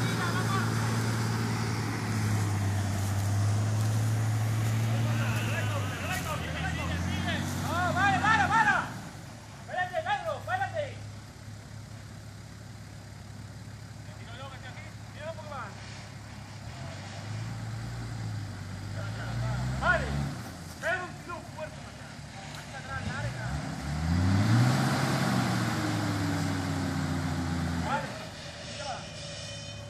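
Nissan Patrol GR Y60 off-roader's engine working through deep mud. It runs steadily at first, then revs up and down several times, with one last rise and fall in pitch near the end. Voices call out in between.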